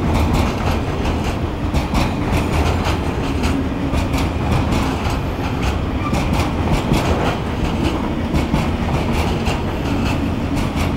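Container freight wagons passing at speed: a steady rumble with repeated clacks of wheels over rail joints.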